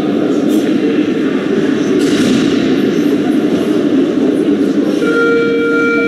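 Loud, steady hubbub of an ice hockey arena, with a held tone of several pitches, like music or a horn over the public address, coming in about five seconds in.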